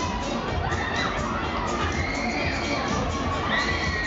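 Riders screaming on a spinning Mondial Shake R4 thrill ride, high drawn-out screams rising and falling over a steady low rumble.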